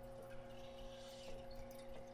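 Faint steady electrical hum made of several fixed tones, with a few faint keyboard clicks as code is typed.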